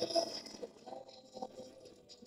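Faint, distant prayer recitation from a mosque loudspeaker, a voice holding one long note from about half a second in, over quiet street noise.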